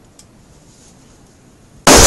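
A capped plastic bottle holding liquid nitrogen bursts with a sudden, very loud bang near the end: the nitrogen boiling inside has built up enough pressure to split the bottle.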